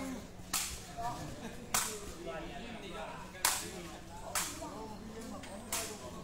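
A sepak takraw ball kicked back and forth in a rally: five sharp hits about a second apart, the loudest midway.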